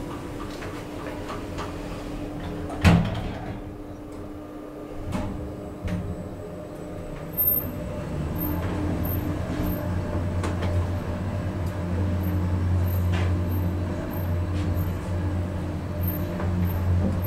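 Schindler 3300 machine-room-less traction elevator: the car doors slide shut with a sharp knock about three seconds in, a few clicks follow, and then the car travels down with a steady low hum that grows louder.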